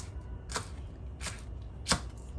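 Kitchen knife slicing spring onion on a cutting board: four separate cuts, each a sharp tap of the blade on the board, about one every half second or so, the last near the end the loudest.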